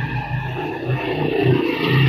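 A motor scooter riding past close by, its engine hum growing louder toward the end as it draws level.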